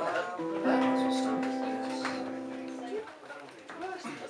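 An acoustic guitar chord strummed about half a second in and left to ring for a couple of seconds before it is stopped.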